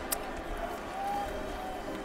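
Low background noise at ringside between spoken instructions, with one sharp click at the start and a faint distant voice around the middle.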